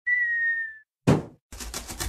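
Cartoon sound effects: a short whistle falling slightly in pitch, then a single thump about a second in as the cardboard box lands. From about halfway a rapid run of scratchy cutting strokes, about ten a second, as a knife blade saws through the box from inside.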